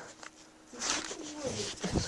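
A soft, low voice, a short murmured sound with a breathy hiss, starting about a second in after a brief hush.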